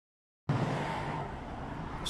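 Steady outdoor background noise, a low hum with hiss, cutting in abruptly about half a second in after silence and easing slightly.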